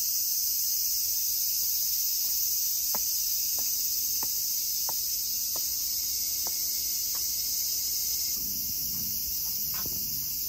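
A dense summer chorus of cicadas: a steady, loud, high-pitched buzz that does not let up. Faint ticks of footsteps come at an even walking pace in the middle of it.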